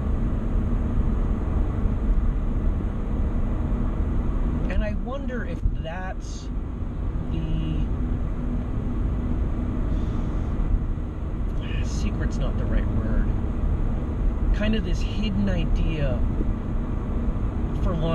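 Steady low road and engine rumble inside a moving car's cabin, with a man's voice coming in briefly a few times.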